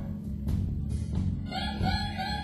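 Live electric blues band playing. Bass and drums carry on through a short gap in the lead line, with two sharp hits in the first second. The lead melody comes back in about a second and a half in.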